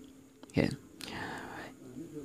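Speech only: a voice says a short "yeah", then a faint, breathy whisper follows.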